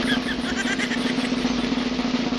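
A steady engine drone holding one even tone, like a car engine running at idle.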